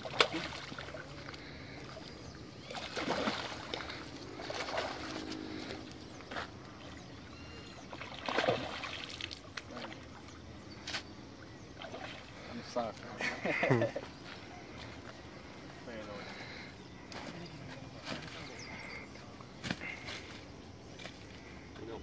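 Water sloshing and splashing as a hooked fish is fought at the pond's surface, with short stretches of indistinct voices now and then.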